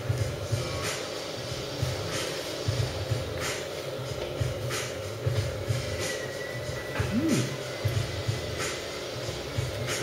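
Pub interior ambience: background music with a low, thudding bass, a steady hum, and a few brief clicks.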